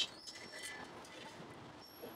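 A sharp click, then faint small clicks and a couple of brief high squeaks as the handheld laser welding gun head is handled and its parts are fitted.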